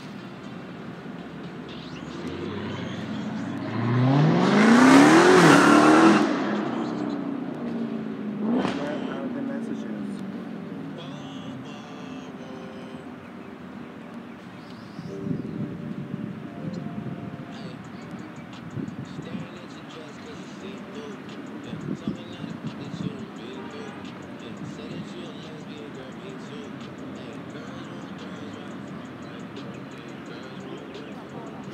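A passing motor vehicle accelerating hard: its engine note rises in pitch, is loudest about four to six seconds in, then fades away.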